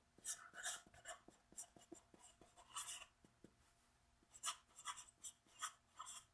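Faint scratching strokes of a felt-tip marker writing on paper, a series of short strokes in uneven bursts as letters are written.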